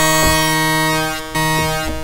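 Waldorf Iridium synthesizer playing an FM (phase FM) kernel patch: a bright held chord of steady tones. Its lowest note drops out briefly a little past a second in and comes back, and the sound dips near the end.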